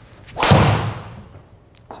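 A golf driver strikes a ball off a tee: one sharp impact about half a second in, followed by a short tail that dies away.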